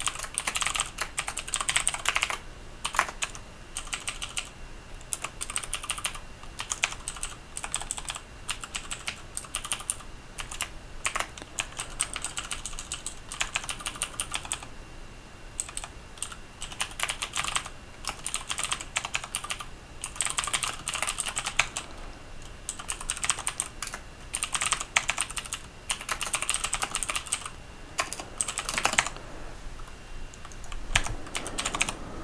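Computer keyboard typing in quick runs of keystrokes, broken by short pauses.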